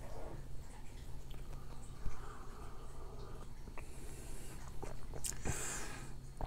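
Quiet sips of coffee from a mug, with a short knock about two seconds in.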